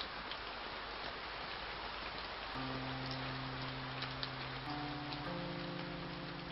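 Steady rain sound, an even hiss with scattered drip ticks. About halfway through, sustained low music notes come in, and more notes are added so that they build into a held chord.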